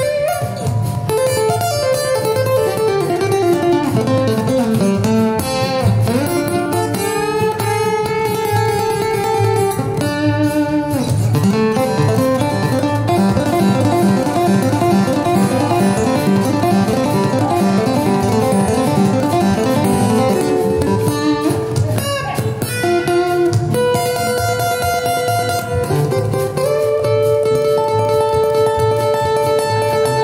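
Live acoustic guitar played lead, with fast note runs, a falling sliding line near the start and rapid repeated notes in the middle, over a band accompaniment that includes an upright bass.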